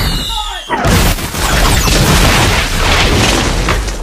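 Loud, continuous booming and rushing, like explosions. It dips briefly about half a second in, then comes back strong and begins to fade near the end.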